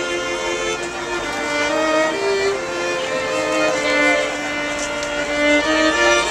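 A string trio of violins and viola playing a tune, with bowed notes held and changing in a flowing melody.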